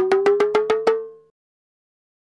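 A short comic sound effect: a rapid, even run of knocking clicks, about eight a second, over a tone that rises slightly in pitch. It fades out just over a second in and gives way to dead silence.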